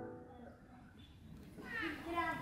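The tail of the performance music dies away, leaving a hushed hall; near the end a short, high-pitched voice calls out, its pitch bending upward.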